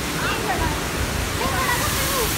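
Waterfall rushing steadily, with faint voices under it.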